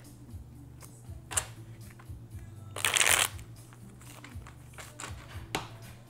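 A deck of cards being shuffled by hand, with scattered light snaps and one louder, half-second rush of riffling cards about three seconds in.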